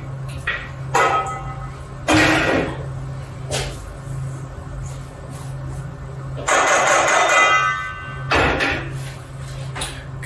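A spatula scraping chickpea falafel mixture out of a food-processor bowl and stirring it in a stainless steel mixing bowl. There are several bursts of scraping; the longest and loudest comes about six and a half seconds in and has a ringing metallic edge. A steady low hum runs underneath.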